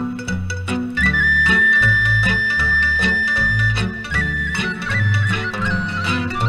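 Instrumental break in a Romanian folk (muzică populară) song. A lead melody holds one long high note from about a second in until about four seconds, then breaks into quick ornamented runs, over alternating bass notes and a steady beat.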